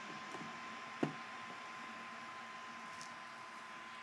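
Open-bench PC switched on with the motherboard's onboard power button: a faint steady hum of its fans running, with one light knock about a second in.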